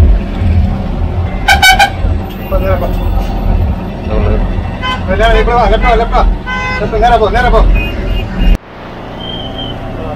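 Ashok Leyland tourist bus's diesel engine running low as the bus creeps along, with a short horn toot about one and a half seconds in. The engine rumble cuts off abruptly near the end.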